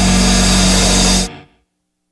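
Loud rock music on a slideshow soundtrack, a sustained chord that cuts off suddenly a little over a second in.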